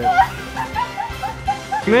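A quick run of about eight short, high-pitched yelps, each rising and falling, over background music.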